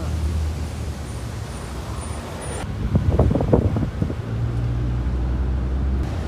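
Steady low rumble of a road vehicle's engine and tyres, heard from inside the moving vehicle, with a brief louder rough patch about halfway through.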